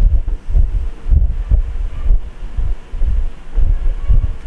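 Low, uneven rumble of air buffeting the microphone, surging and fading several times a second.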